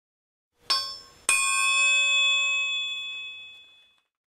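Two bell-like metallic dings about half a second apart, the second louder and ringing on with several clear tones before fading out over about two and a half seconds.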